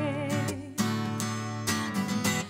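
Acoustic guitar strumming chords, with the end of a woman's sung note held with vibrato fading out about half a second in; after that the guitar plays alone, with a fresh strum just under a second in.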